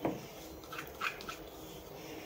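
A light click as the lid is pressed onto a steel mixer-grinder jar, followed about a second in by three faint, short, high squeaks.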